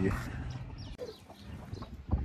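Chickens clucking softly: a few short, faint calls.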